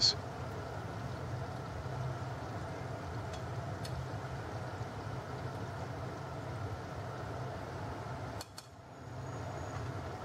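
Chapli kebab patties shallow-frying in hot oil over high heat, a steady sizzle, with a few light clicks of a metal spatula against the pan. The sizzle drops away briefly near the end and comes back.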